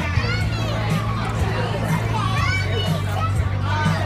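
Children's high voices calling and chattering, with high swooping shrieks, over a steady low hum.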